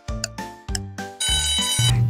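Light background music with short notes about twice a second, then a bit past halfway a brief alarm-clock bell ring sound effect marking the end of a countdown timer.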